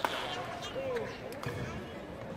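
Badminton racket strikes on a shuttlecock during a rally: a sharp crack right at the start and another about a second and a half in, over the murmur of spectators' voices.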